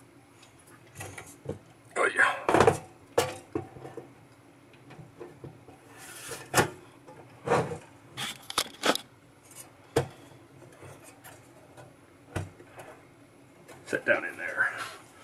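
Irregular knocks, clicks and light clatter of circuit boards and a metal card cage being handled and set down on a work surface, the busiest cluster a couple of seconds in.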